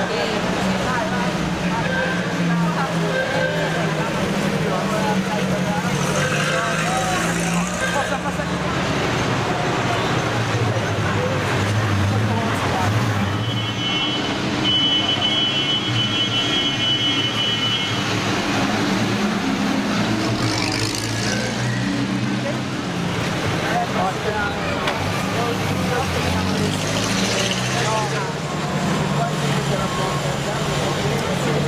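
Vintage cars' engines running at low speed as they roll past one after another, their pitch shifting as each car passes, over spectators' voices. A high-pitched tone, such as a horn or whistle, sounds for about five seconds near the middle.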